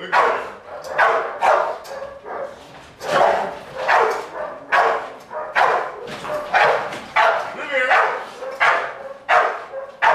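American bulldog barking repeatedly at a training helper during protection-training agitation, about one to two loud barks a second without a break.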